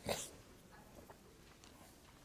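A short breath close to the microphone at the very start, then quiet room tone with a few faint ticks.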